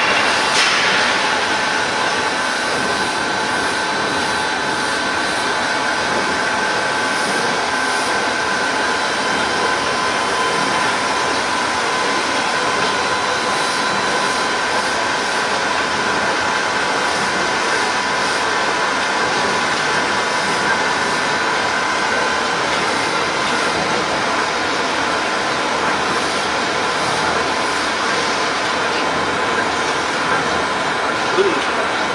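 Automatic croissant dough sheeting line running: the rollers and conveyors give a steady mechanical noise with a faint constant whine.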